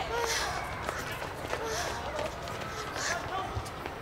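A group of people jogging: running footsteps with indistinct voices chattering over them.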